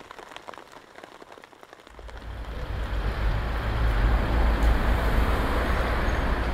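Road traffic on a busy highway: a steady wash of passing vehicles with a deep low rumble. It swells in about two seconds in and holds, after a quiet start with faint scattered ticks.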